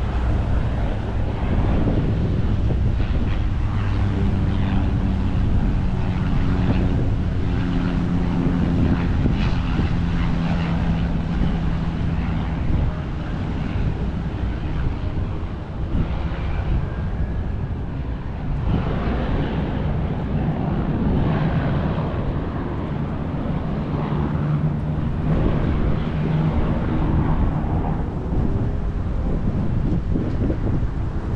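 Wind buffeting the microphone in a steady low rumble, with a distant engine drone coming through for several seconds starting about three seconds in, and again briefly about twenty-four seconds in.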